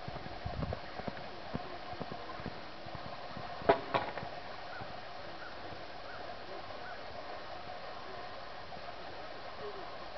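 A horse's hoofbeats on a sand arena, soft and irregular over the first few seconds, with two sharp, loud knocks close together about four seconds in.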